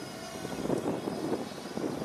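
DJI Phantom 2 Vision quadcopter hovering overhead, its four electric motors and propellers giving a steady buzz.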